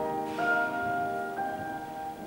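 Closing notes of a piano accompaniment: two high notes struck about a second apart ring out over held lower notes and slowly fade.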